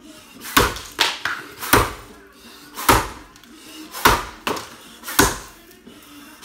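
Axe blows biting into a log in an underhand chop, five heavy strikes about a second apart with lighter knocks between, each ringing briefly in a small room.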